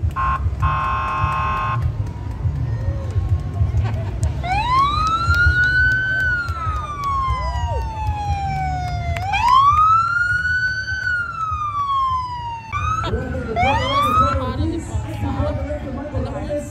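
Vehicle siren on a Border Patrol pickup truck: a short steady horn-like tone near the start, then a wail that rises and slowly falls, sounded three times over a steady low rumble.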